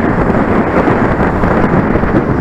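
Wind buffeting the microphone of a bike-mounted camera on a road bicycle riding at race speed in a pack: a loud, steady, low rumble with no distinct events.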